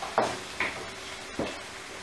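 Wooden spatula stirring thick cooked peas in a frying pan, with a few soft knocks of the spatula against the pan and a faint sizzle underneath.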